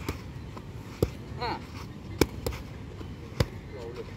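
Boxing gloves smacking into focus mitts during pad work: three loud, sharp smacks about a second apart, with a few lighter hits between them.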